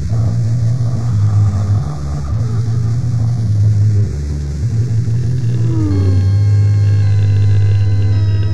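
Dark ambient music: a loud, low droning rumble with a noisy, shifting texture over it. About six seconds in, sustained synthesizer chord tones enter, with a short falling glide.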